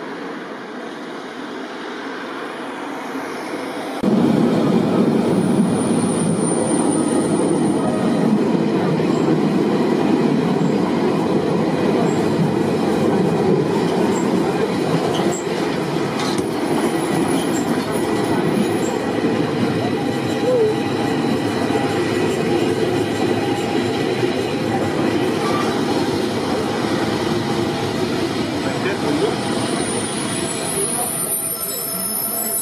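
Narrow-gauge Zillertalbahn train carriages running along the track, heard from aboard: a steady rumble and rattle of wheels on rails. It starts suddenly about four seconds in, after a quieter stretch.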